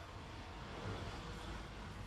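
Faint, steady hiss of background noise with no distinct events.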